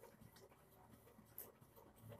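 Near silence: quiet room tone with two faint ticks of a ballpoint pen on notebook paper, about half a second in and again about a second later.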